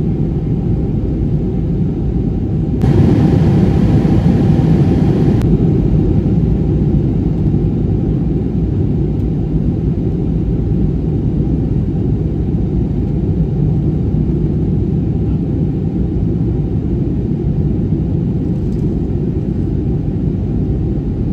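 Cabin noise of an Airbus A320-family jet airliner in flight, heard from a window seat: a steady low rumble of engines and airflow. A brighter hiss comes in about three seconds in and cuts off abruptly two to three seconds later.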